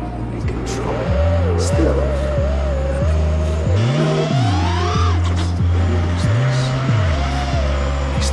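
Electronic music with a repeating bass figure, a steady beat and a pitched line that bends and slides up and down above it.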